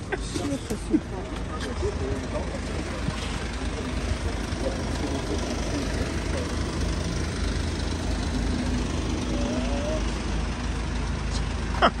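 Mercedes-Benz Sprinter minibus engine idling with a steady low rumble.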